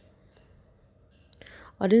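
Near silence with a few faint, short ticks, then an intake of breath, and a woman starts speaking near the end.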